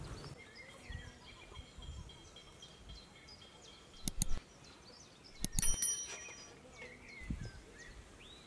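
Small birds chirping in short, scattered calls. There are two brief clatters, about four and five and a half seconds in; the second rings briefly like struck metal.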